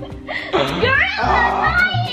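Background music with a steady bass beat, over which two young people shriek and laugh excitedly in high, sweeping voices.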